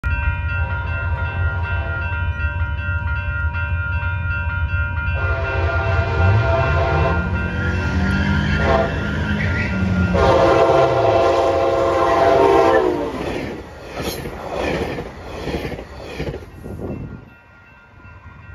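Grade-crossing warning bells ringing as a passenger train approaches and sounds its horn in several blasts, the last and loudest ending about 13 seconds in. The train's rumble and wheel clatter then fade away.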